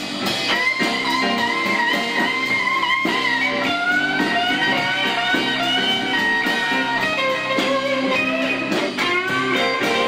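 Live blues-rock band playing an instrumental passage: an electric lead guitar takes long held notes that bend upward and waver, over the rhythm of the band.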